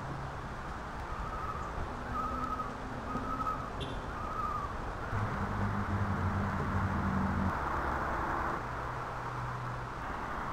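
Outdoor ambience with a steady rush in the background. A bird calls four short notes in the first half, and a low engine hum from a vehicle swells in the middle.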